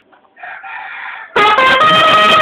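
A trumpet breaks in with a loud sustained note about a second and a half in, after a quieter rustle.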